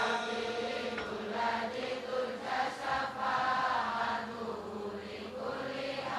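A crowd chanting a sholawat together, many voices singing the same devotional Arabic refrain in unison, softer and more blurred than a single voice on the microphone.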